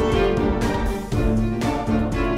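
Orchestral instrumental music with bowed strings, sustained chords changing about every half second to a second.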